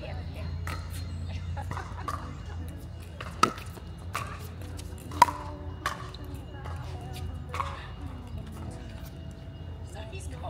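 Pickleball rally: paddles striking a hard plastic ball, a string of sharp pops about once a second, the loudest two about three and a half and five seconds in.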